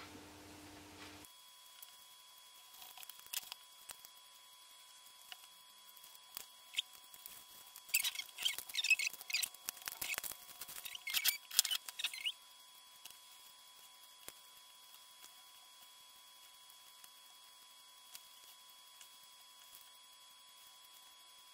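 Light scattered taps and clicks of card being pressed and handled, then a few seconds of crinkling and rattling from a small plastic bag of clear embellishments being opened and tipped into a triangular plastic tray.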